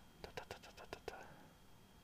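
A quick, uneven run of about eight faint clicks within the first second or so, then only faint room noise.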